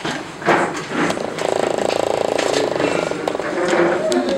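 Bumps and knocks of a handheld camera being moved, then a steady buzz lasting about two seconds in the middle.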